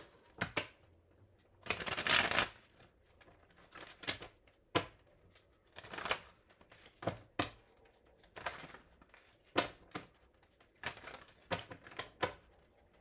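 A deck of cards being shuffled by hand: a longer riffling rush about two seconds in, then irregular short snaps and slaps of the cards.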